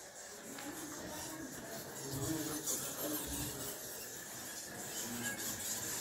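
A colony of roosting bats calling, a steady mass of many faint, high calls overlapping.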